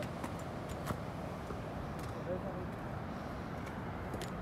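Steady rush of a mountain waterfall, with a few light clicks and a brief faint voice about two seconds in.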